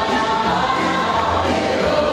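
Dance music with singing, playing steadily throughout.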